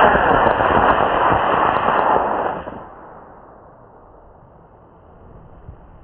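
Model rocket motor igniting at liftoff: a sudden loud rushing hiss that holds for about two and a half seconds, then fades away as the rocket climbs.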